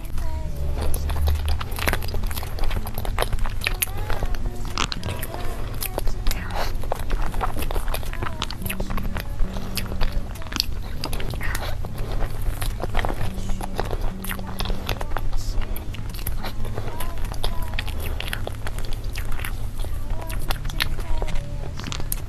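Close-miked eating of soft chocolate cake: wet chewing, lip smacks and spoon clicks come irregularly throughout. Under them runs background music with steady low notes.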